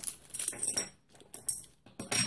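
Metal mounting bars and hardware from a CPU cooler's mounting kit clinking and rattling together as they are picked up and handled: a short jingle early in the first second and one sharp clink about a second and a half in.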